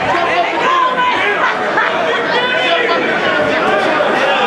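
Ringside crowd of spectators talking and shouting over one another, many voices at once with no single voice standing out.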